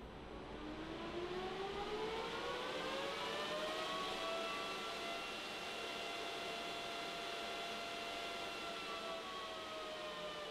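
AvalonMiner 821 Bitcoin miner's cooling fan spinning up at power-on: a whine that rises in pitch over the first four seconds over a growing rush of air, then holds steady, beginning to ease down near the end.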